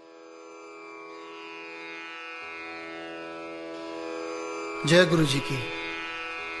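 A steady instrumental drone of many held tones fades in from silence and holds, with a lower layer joining about two and a half seconds in. A voice begins near the end.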